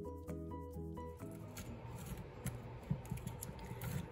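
Background music ends about a second in, followed by small scrapes and clicks of hands working on a wooden planter.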